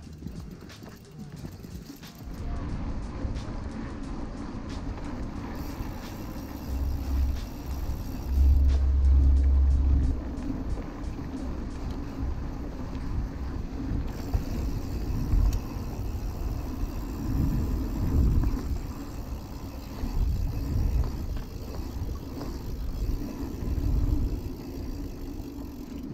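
Wind rumbling on a bike-mounted action camera's microphone over the rumble of mountain-bike tyres rolling on a dirt track, with the heaviest gusts about seven to ten seconds in.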